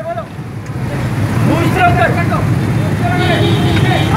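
Many motorcycle engines running together in a slow procession, their low rumble building over the first second and holding steady, with voices shouting over it.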